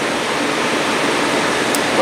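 A steady rushing hiss with no rhythm or pitch, holding an even level throughout, with one faint high tick near the end.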